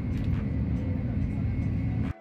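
Steady low rumble of a Shinkansen bullet train running at speed, heard from inside the passenger cabin, with a faint steady high whine above it.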